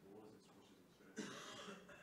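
Faint, distant speech of an audience member asking a question away from the microphone, with a short cough just over a second in.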